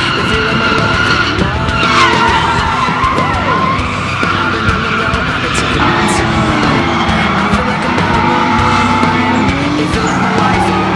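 Drift cars sliding with tires squealing and engines revving, with background music over it. The engines and tires rise and fall in pitch several times, including a falling squeal about two seconds in.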